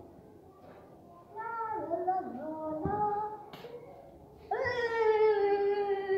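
A child's voice: a few short calls, then, about four and a half seconds in, one long held cry that slowly falls in pitch.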